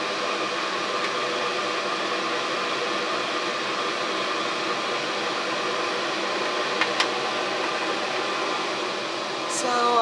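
Vent hood exhaust fan running steadily, a constant rush of air with a hum of several steady tones, pulling the etchant fumes out of the enclosure. A single sharp click about seven seconds in.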